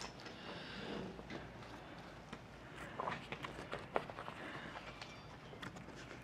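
Faint, scattered clicks and small knocks of truck-bed-cover rail hardware being handled and fitted against the truck's bed rail.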